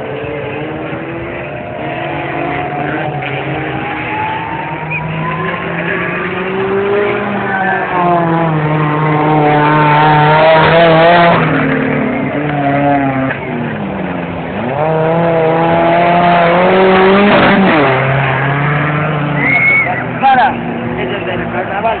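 Suzuki Samurai 4x4's engine revving hard through deep mud, its pitch climbing and falling again and again in long surges, loudest around the middle and again in the second half.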